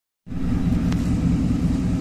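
A steady low mechanical rumble fades in just after a cut and runs on without change.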